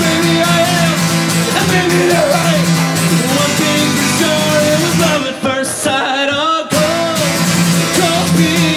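Live male vocal over a strummed acoustic guitar in a country-rock song. The strumming breaks off for about a second and a half near the end while the voice carries on, then starts again.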